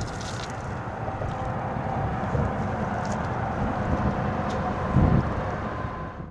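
Wind rumbling on the microphone, with a faint steady hum under it and a stronger gust about five seconds in.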